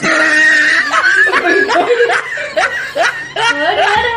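Women laughing loudly and continuously, in a run of repeated short bursts.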